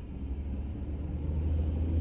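Low motor-vehicle rumble heard from inside a car, swelling steadily louder through the two seconds.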